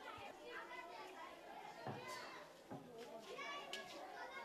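Faint chatter of many children's voices at once, talking and calling over one another, with a couple of dull thumps about two and three seconds in.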